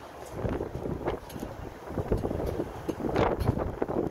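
Wind buffeting the microphone in uneven gusts, over the low rumble of an open-sided shuttle cart rolling along a paved road.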